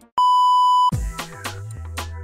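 A single loud, steady electronic bleep, like a censor bleep sound effect, held for most of a second, then background music with a stepping bass line.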